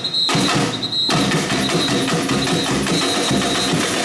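Samba percussion band playing a fast, driving rhythm of tamborims, metal shakers and drums.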